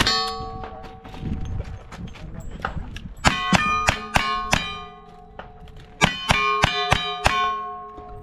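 Rapid gunshots on steel targets, each hit leaving the steel plates ringing: a string of about five quick shots starting about three seconds in, a short pause, then another string of about five starting around six seconds in.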